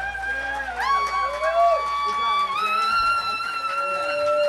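Live bluegrass band ending a song on long held notes that hold steady, one stepping up in pitch partway through, with voices from the audience underneath.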